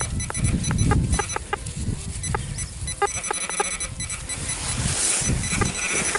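Makro Racer metal detector giving short, repeated beeps as its search coil is swept back and forth over a buried coin, with the coil rustling through grass and soil. It is a clean, repeatable signal that the detectorist reads as a large tsarist-era coin.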